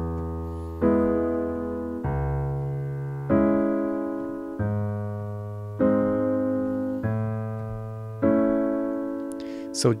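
Piano (a sampled piano sound played from a keyboard) playing the left-hand part of the chorus alone. A low bass note and a chord above it take turns about every 1.2 seconds, each ringing on and fading slowly under the sustain pedal.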